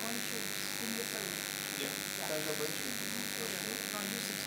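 Faint, indistinct voices talking over a steady electrical buzz and hiss.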